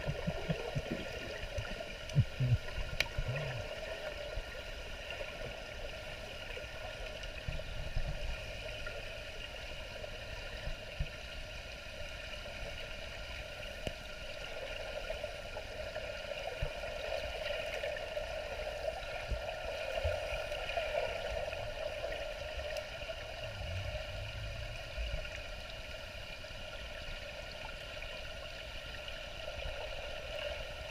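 Underwater ambience heard through a camera's waterproof housing: a steady, muffled wash of water noise. A few low thumps and knocks in the first few seconds are the loudest sounds.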